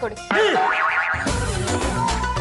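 Comic sound-effect sting with arching pitch sweeps, a cartoon-style boing, followed a little past a second in by background music with a heavy bass.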